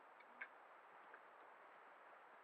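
Near silence: a faint steady hiss with a few soft clicks, the clearest about half a second in.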